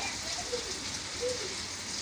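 Steady background hiss with no distinct sound event; two faint brief tones about half a second and a second and a quarter in.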